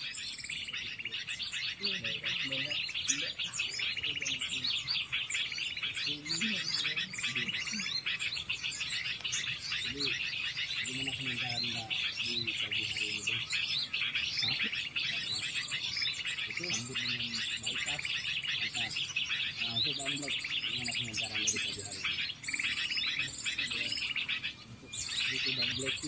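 Small birds twittering continuously, a dense run of quick, high chirps many times a second, with faint voices underneath.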